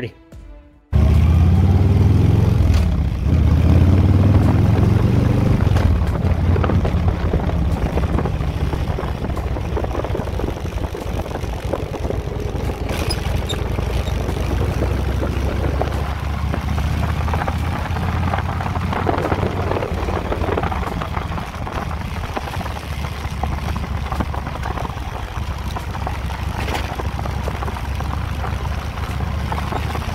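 2000 Victory V92SC's V-twin engine running steadily as the motorcycle is ridden, heard from on the bike, cutting in suddenly about a second in.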